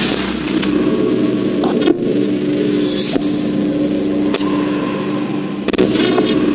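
Sound effects for an animated channel-logo intro: a loud, noisy sweep over a steady low drone, broken by a few sudden hits, one about two seconds in, one past four seconds and one near the end.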